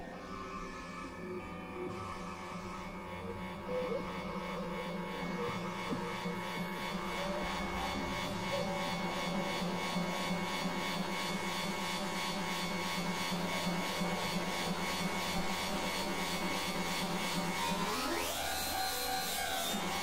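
Experimental electronic synthesizer drone: layered steady tones over a low hum, with a buzzing, noisy upper texture that thickens and slowly grows louder. Near the end a tone sweeps upward, holds, and falls back.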